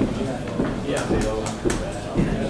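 Indistinct talk from several people in a large meeting room, with a few light clicks or knocks about a second in and again near the end.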